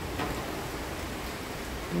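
Steady rain falling, an even hiss with no separate drops standing out.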